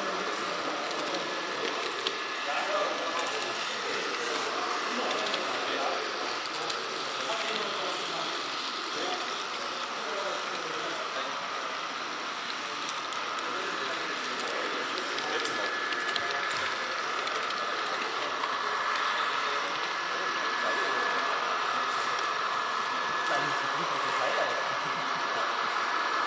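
Indistinct chatter of people in a large hall, over a steady whirring whine from the small electric motor and wheels of the H0 model train carrying the camera. The whine grows a little louder in the second half.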